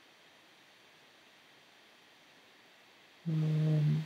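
Near silence for about three seconds, then a man's short, steady hum at one pitch, like a held "mmm" hesitation.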